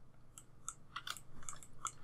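Faint, scattered clicking of a computer mouse and keyboard, about eight short clicks over two seconds.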